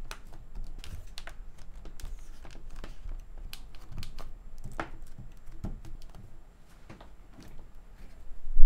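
The plastic-and-metal chassis of an MSI Creator 15 OLED laptop creaking under hands pressing on its palm rest: a scatter of small crackles and clicks, with a few sharper cracks around the middle. The noise comes from the case flexing, which the owner calls too flimsy for such a device.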